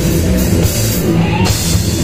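Live rock band playing an instrumental passage: distorted electric guitar, electric bass and a drum kit, loud and dense. The cymbals drop out briefly about a second in and come back in.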